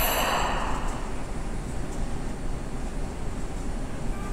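Tokyu commuter train at a station platform: a sharp hiss of released air fades away within the first second, leaving a steady low rumble.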